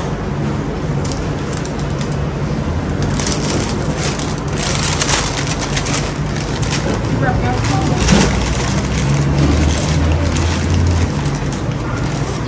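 Paper wrapping crinkling and rustling as a large döner wrap is pulled open, busiest about three to six seconds in, over a steady low hum.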